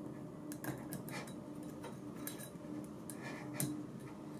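Faint, scattered light metallic clicks and scrapes of a steel spiral circlip being worked by hand into its groove in the mag probe's bearing housing, a fiddly fit.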